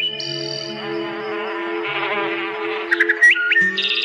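Calm meditation music of long sustained synthesizer tones, with bird chirps mixed over it, including a quick run of rising chirps about three seconds in.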